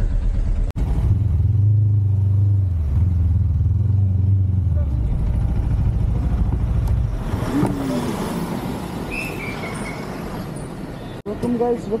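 Motorcycle engine and road noise as the bike slows to a stop, with a steady low drone that eases off about halfway through, followed by faint voices.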